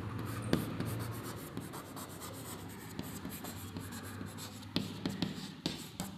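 Chalk writing on a chalkboard: a run of short scratching strokes and light ticks as words are written out, with a few sharper taps near the end.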